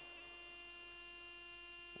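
Faint, steady electrical hum from the recording's audio chain: a few constant tones, one low and several high, with nothing else sounding.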